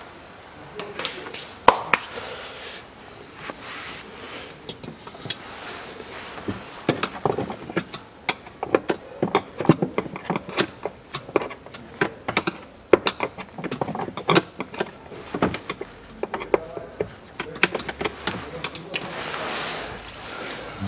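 Rustling, scraping and a rapid run of plastic clicks and knocks as a hand works a stuck cabin air filter out of its plastic housing behind the glovebox. The filter is jammed by sand and dirt. The clattering is thickest in the middle.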